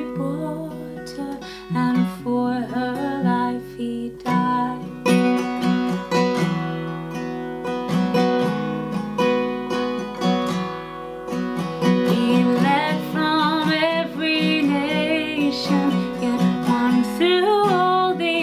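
A woman singing a hymn to her own strummed acoustic guitar. In the middle the voice drops out for a guitar-only passage between verses, and the singing comes back in the second half.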